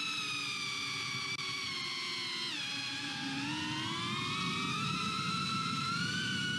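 GEPRC Cinelog35 V2 ducted cinewhoop's motors and props whining steadily, heard through the onboard camera's recording. The pitch falls about two and a half seconds in as the throttle eases, then climbs back over the next couple of seconds.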